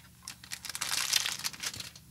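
Clear plastic packaging bag crinkling as it is pulled open and worked off a small tin case: a dense, high-pitched crackle of many small clicks that stops near the end.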